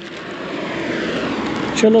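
A gust of wind that builds over the first second and then holds as a steady rush, with a loose clear plastic rain sheet rustling in it.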